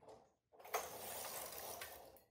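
Silver Reed knitting machine carriage pushed across the needle bed, knitting a row. A short noise comes first, then about half a second in a steady sliding rasp starts sharply and runs for about a second and a half.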